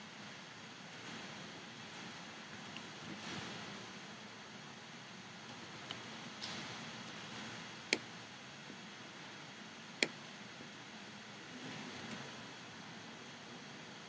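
Faint room hiss with soft computer keyboard and mouse clicks; two sharper single clicks stand out about eight and ten seconds in.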